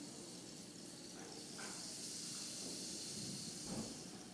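A soft, steady high hiss that grows stronger about a second and a half in, with a faint thud near the end.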